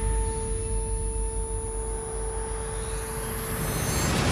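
Trailer sound-design drone: a deep, steady low rumble under two held tones, with a hiss swelling up over the last second or so.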